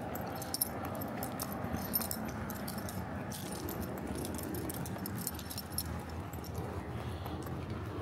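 A small dog's collar and leash hardware jingling lightly and irregularly as she walks, over steady outdoor background noise.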